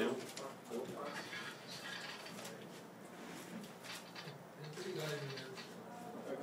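Low, indistinct chatter of several people talking quietly in a small room, with scattered murmured words.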